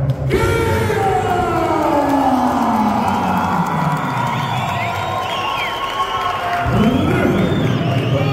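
Arena crowd cheering, shouting and whistling, with a long drawn-out call on the announcer's microphone that falls steadily in pitch for about four seconds, and another call rising near the end.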